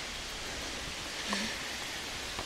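Steady, even outdoor hiss, with a brief faint low tone a little past halfway.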